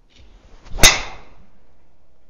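A golf driver's swing: a short swish builds, then a sharp crack as the clubhead strikes the ball a little under a second in, and the sound trails off afterwards.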